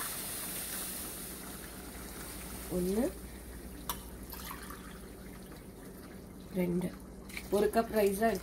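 Water being added to a pressure cooker of hot, oily chicken masala. A hiss is strongest at the start and dies away gradually over the next few seconds.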